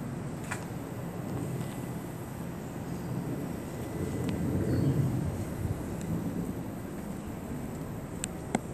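Low, steady outdoor rumble that swells about halfway through and fades again.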